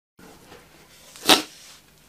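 Faint room tone, with one short, sharp noise a little over a second in.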